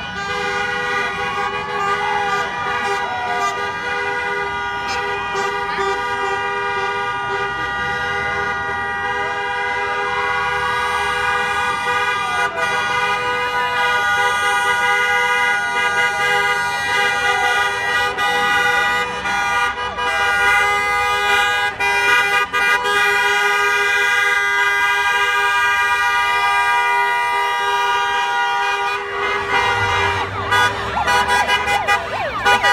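A car horn held down as one continuous two-note blare for nearly the whole time, stopping just before the end. Voices shout and cheer over it as parade vehicles roll past.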